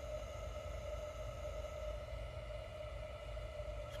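Steady low hum with a faint whine held at one pitch, unchanging throughout.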